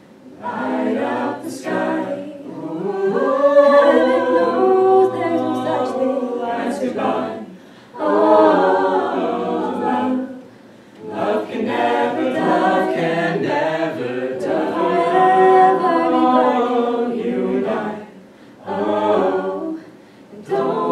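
A mixed-voice a cappella group singing in close harmony, in long phrases with short breaks between them.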